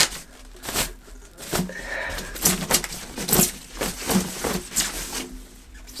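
Paper wrapping crinkling and rustling in irregular crackles as it is pulled down off a ukulele.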